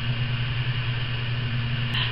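A steady low hum with a faint hiss over it, holding an even level throughout.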